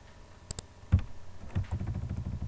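Clicks and key taps at a computer keyboard and mouse: two quick sharp clicks about half a second in, a louder knock near one second, then a fast run of soft taps.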